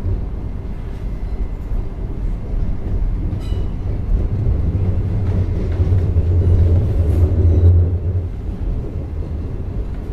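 Interior running noise of a Class 707 Desiro City electric multiple unit: a steady low rumble of wheels on rail, growing louder between about five and eight seconds in before easing off.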